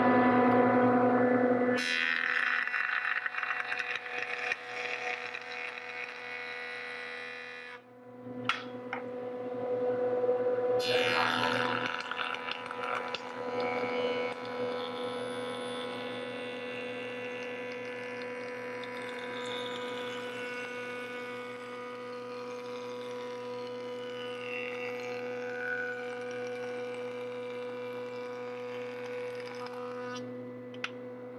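Jointer running with a steady hum while a board is face-jointed over its cutterhead. There are two cutting passes: the first starts about two seconds in and cuts off sharply near eight seconds, and the second starts near eleven seconds and fades back into the motor's hum.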